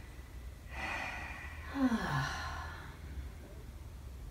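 A woman's long breathy sigh, with a short voiced 'mm' falling in pitch about two seconds in, from the massage receiver as she takes in the hand pressure she asked for.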